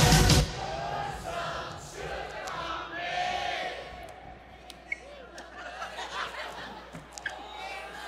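Loud recorded pop-rock music cuts off about half a second in, and a large audience sings the missing song lyric back, a ragged chorus of voices that thins out after a few seconds. A couple of small sharp clicks come near the end.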